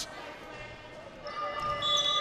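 Quiet sports-hall background, then about halfway through a steady electronic horn of several pitches comes in and holds, typical of the scoreboard horn called for a substitution at a dead ball.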